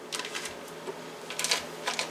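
A knife scraping softened butter off its paper wrapper into a glass mixing bowl: a few short scrapes and taps, just after the start, about a second and a half in and near the end.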